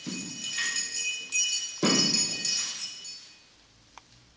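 Jingling of small metal bells, twice, each burst starting with a thud; the second, about two seconds in, is the louder, and the ringing fades away after each.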